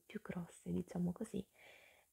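A woman speaking softly, half-whispered, followed near the end by a short faint hiss.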